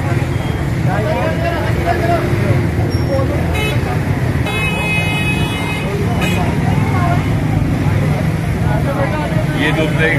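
Busy street ambience: a steady low traffic rumble under indistinct voices of people talking, with a high-pitched vehicle horn sounding for about two seconds near the middle.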